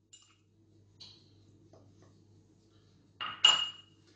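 A metal teaspoon clinking against ceramic dishes while cocoa is scraped out and stirred into flour: a faint tap about a second in, then two quick ringing clinks a little after three seconds.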